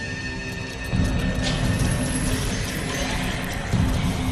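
Background documentary score of held, sustained tones over a low rumble, which swells about a second in.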